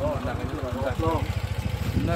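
Motorcycle engine idling with a steady, rapid low pulse, with faint voices over it.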